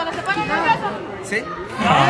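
Only speech: several people talking over one another.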